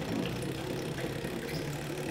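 Electric crazy cart go-kart running at its lowest set speed: a steady motor hum.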